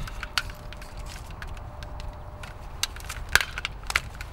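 Jump leads being untangled by hand: the metal clamps and cables clicking and knocking against each other in irregular small clacks, with a sharper clack a little after three seconds.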